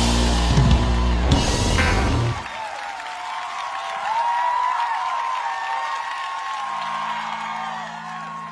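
Rock band playing loudly, with drums, bass and guitars, breaking off at the end of a song about two seconds in. A large crowd then cheers and whistles, and near the end a low steady held note comes in.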